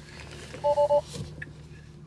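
Car's in-cabin warning chime: a quick run of three short beeps, each two notes sounding together, about two-thirds of a second in, over a low steady cabin hum.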